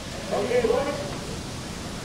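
Steady rushing noise of breaking ocean surf, with a faint voice murmuring in the background during the first second or so.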